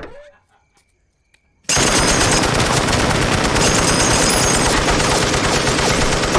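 Sustained automatic fire from an M60 machine gun on a rotating mount in a car trunk: one continuous rapid burst that starts suddenly about a second and a half in and keeps going.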